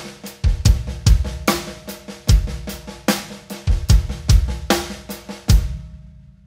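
Yamaha acoustic drum kit playing a groove: a steady run of snare and hi-hat strokes over regular bass drum hits. The playing stops shortly before the end and the drums ring out.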